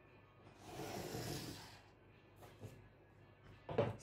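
Paper rustling and a ruler sliding across pattern paper, a brief swish about a second long near the start, then a few light taps near the end, over faint background music.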